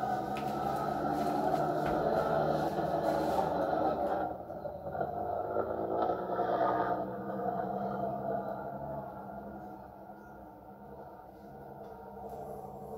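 Desert rally car's engine running hard as it slides past through the sand and drives away, its note fading toward the end.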